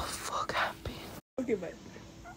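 Whispering, soft voices, broken by a brief total dropout of sound just past a second in.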